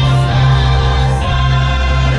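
Christmas parade music: a choir singing over held chords and a steady bass line, played loud over the parade's sound system.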